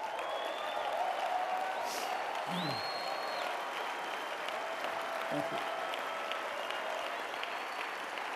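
Large audience clapping steadily, with a few brief whistles and voices over the applause.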